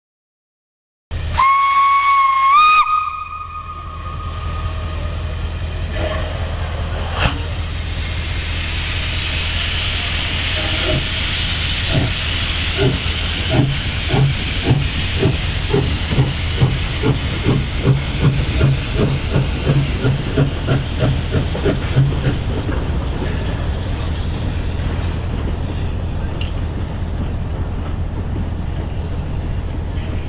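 Steam locomotive SJ E 979 gives a short steam whistle whose pitch steps up, then sets off: steam hissing from the open cylinder drain cocks and a regular beat of exhaust chuffs from about ten seconds in, fading after about twenty-two seconds.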